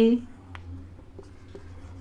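Whiteboard marker writing on a whiteboard: faint strokes of the tip on the board, with a small click about half a second in, over a low steady hum.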